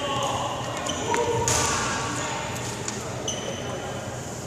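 Badminton play in a large echoing sports hall: short high-pitched squeaks of court shoes on the wooden floor, with shuttlecock hits and indistinct voices in the background.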